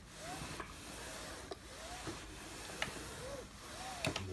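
A steam iron sliding back and forth over dark trouser fabric on an ironing board: a soft, steady rubbing hiss, with a few faint rising-and-falling squeaks and light clicks.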